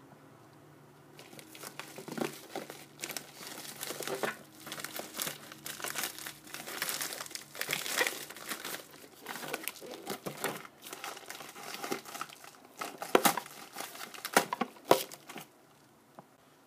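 Plastic mailer packaging crinkling and crackling as it is handled and pulled open. After a quiet first second it runs on continuously, with the sharpest, loudest crackles near the end.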